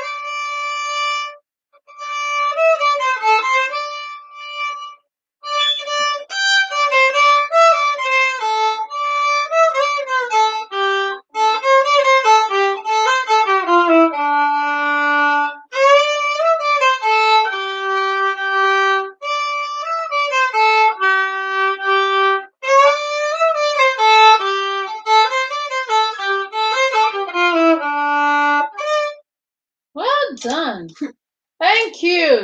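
Solo violin playing a melody in phrases of a few seconds with short breaks between them, mixing quicker runs with held notes. It stops about a second before the end.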